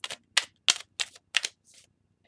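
Tarot cards being shuffled overhand: packets of cards slap and snap against the deck in about six crisp clicks, roughly three a second.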